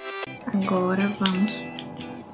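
Electronic background music with a steady beat cuts off abruptly at the very start. A quieter stretch follows, with softer music and a brief murmuring voice.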